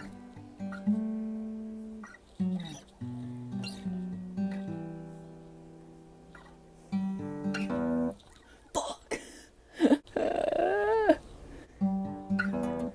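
Acoustic guitar played slowly, single notes picked one after another and left to ring out, as the opening riff of a song. Near the end a brief voice sounds over it.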